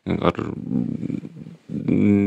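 A man's voice saying a short "ar", then a drawn-out, wavering hesitation sound while he searches for words. A steady held hum begins near the end.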